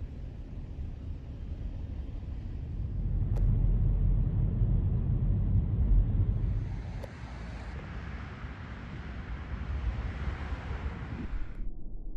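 Road and engine noise of a moving car heard from inside the cabin: a steady low rumble that grows louder a few seconds in, then a higher hiss joins for the second half and cuts off suddenly near the end.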